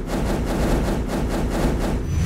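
Sound-design sting for an animated logo: a dense, steady, rumbling wash of noise with a faint rapid pulsing.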